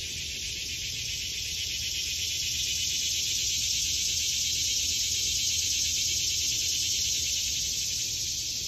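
Steady, high-pitched chorus of insects chirring in woodland, swelling slightly toward the middle.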